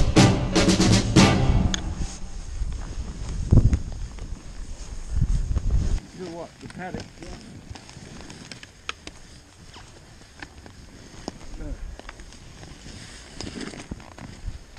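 Background music ends about two seconds in, followed by a low rush of skis through deep powder snow until about six seconds. Then quieter crunching of skis and boots stepping uphill through the powder, with scattered sharp clicks of ski poles and skis and a faint voice.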